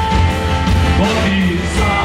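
Live rock band playing a song, acoustic and electric guitars over a drum beat.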